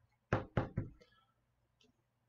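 Three quick knocks of a hard plastic card holder, about a quarter second apart, as it is handled.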